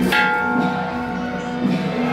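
Beiguan procession music, with a metal percussion instrument struck once at the start and ringing on with several clear tones over the band's beat.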